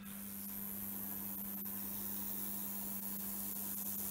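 High-voltage corona hiss from an ion lifter powered through a neon sign transformer and Cockcroft multiplier. The hiss comes on suddenly at the start and stays steady over a low hum.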